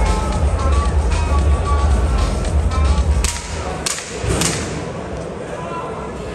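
Arena PA music with a heavy bass beat that cuts out about three seconds in, followed by three sharp cracks about half a second apart; the sound is quieter and thinner afterwards.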